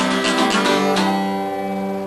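Acoustic guitar strumming the closing chords of the song, the last strum about a second in, then left to ring and slowly fade.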